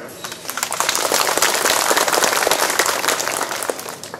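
Audience applause: many hands clapping, building about half a second in, holding loud, then thinning out near the end.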